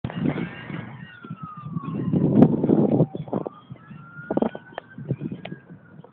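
A siren wailing: one pitched tone that falls slowly over about two seconds, then climbs slowly again. Scattered knocks and low rumble run beneath it.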